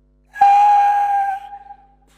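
A man's loud, high-pitched falsetto cry that starts suddenly and is held on one steady note for about a second and a half before it fades.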